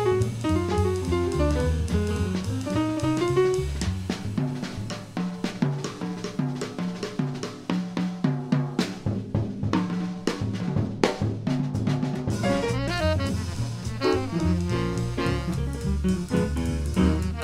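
Live jazz quartet with acoustic piano, double bass and drum kit. About four seconds in, the drums take a solo break of snare, bass drum and cymbal strokes. Near the end the piano and saxophone come back in over the bass and drums.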